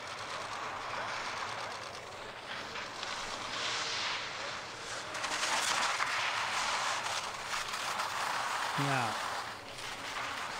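Mono-ski and outrigger edges scraping and carving across hard, rutted snow through a series of giant slalom turns: a hissing scrape that swells and fades with the turns, with a few sharp chatters.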